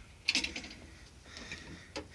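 A few faint mechanical clicks and light knocks, mostly in a quick cluster about half a second in, from metal being handled.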